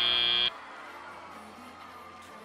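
FIRST Robotics Competition end-of-match buzzer, a steady high tone that cuts off abruptly about half a second in, leaving faint hall noise.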